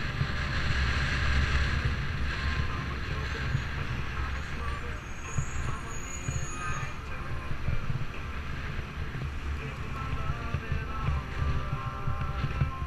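Wind rumbling steadily on a camera microphone while riding a bicycle along a city street, with passing traffic noise underneath.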